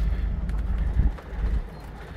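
Low steady rumble inside a truck cab, typical of the engine idling, dipping quieter for about a second in the second half.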